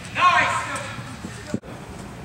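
A person's short, loud shout over background voices in a large indoor hall; the sound breaks off abruptly about one and a half seconds in.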